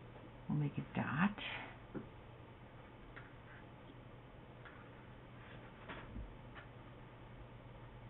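Quiet room tone with a low steady hum; about a second in, a woman makes a short, quiet vocal sound, not a full phrase, and a few faint ticks follow at scattered moments.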